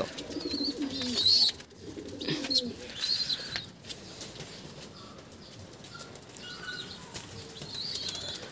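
Pigeon wings flapping over the first few seconds, with a few short, high bird chirps; quieter after that.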